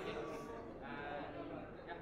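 Speech only: people talking, with no distinct non-speech sound.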